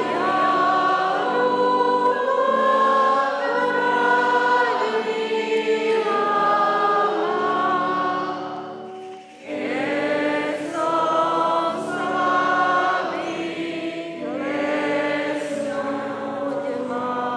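A church congregation singing a hymn together, slow held notes, with organ accompaniment. The singing breaks off briefly about nine seconds in, between verse lines, and then goes on.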